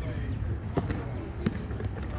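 A close pair of sharp knocks a little before a second in and another near a second and a half, over a steady low rumble.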